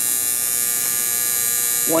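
Steady electrical hum from an energized air-conditioner contactor whose coil is powered by the control circuit.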